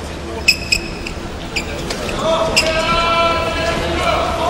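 Two short, sharp squeaks of badminton shoes on the court floor about half a second in, with a few fainter squeaks after. They are followed, from about halfway, by one long drawn-out shout of a voice echoing in the arena.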